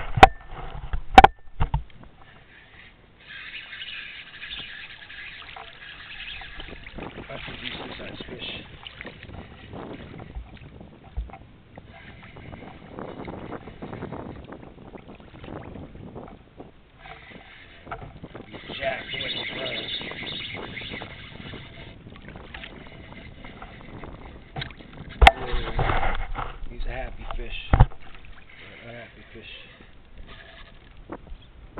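Small waves slapping against a plastic kayak hull, with several sharp knocks against the hull near the start and again near the end. A higher hissing or whirring sound comes twice, several seconds each time.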